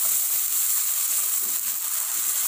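Tomato, chili and shallot sautéing in hot oil in a wok, a steady sizzling hiss, stirred with a metal spatula.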